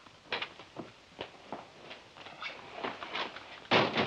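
Light, irregular clicks, knocks and clothing rustle as a spring-loaded derringer holster rig is unstrapped from a man's arm, with a louder knock near the end.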